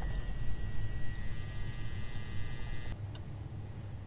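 Steady low electrical mains hum, with a faint high whine over it that cuts off suddenly about three seconds in, followed by a couple of faint clicks.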